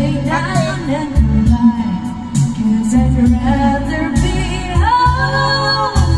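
Karaoke backing track playing with a steady bass beat, and a voice singing along with the melody; a long note is held near the end.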